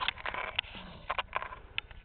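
Faint trampoline bouncing: a few light clicks from the springs and mat, evenly spaced about every 0.6 s.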